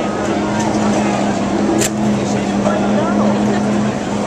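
Steady engine drone from late-model stock cars running slowly on pit road, with indistinct crowd voices over it and a single sharp click about two seconds in.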